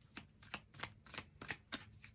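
Tarot deck being shuffled by hand, the cards snapping together in a steady run of short, sharp clicks, about three a second.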